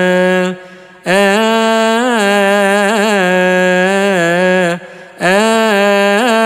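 A solo male voice chanting a melismatic Coptic liturgical melody, holding long notes with quick wavering ornaments. It breaks off briefly for a breath about half a second in and again near the end.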